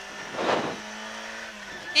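Peugeot 106 rally car's four-cylinder engine heard from inside the cabin, running at a steady note. About half a second in, the note drops to a lower pitch, together with a brief rushing noise.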